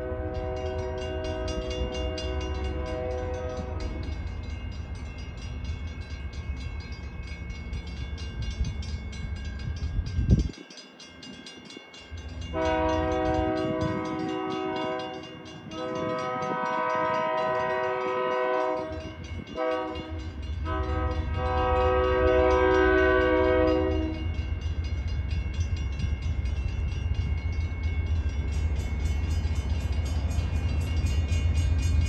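Diesel locomotive's air horn sounding a steady chord in long blasts as the train approaches: one blast ends about four seconds in, then three more long blasts follow between about twelve and twenty-four seconds, over a steady low rumble.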